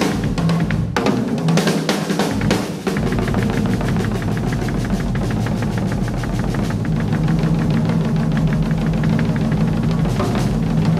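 Solo drum kit played hard and fast: snare, toms, bass drum and cymbals, with a brief break about a second in. From about three seconds in, the strokes run together into a continuous fast roll over a steady low ring of the drums.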